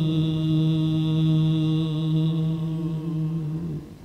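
A man's voice holding one long sung note in Gurbani shabad kirtan, steady in pitch with a slight waver, breaking off shortly before the end.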